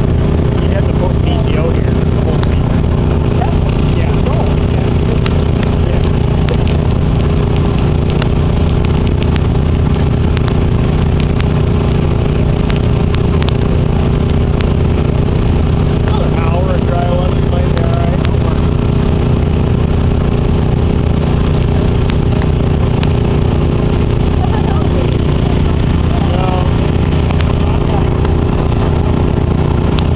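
Small engine running steadily at idle close by, with faint voices talking underneath.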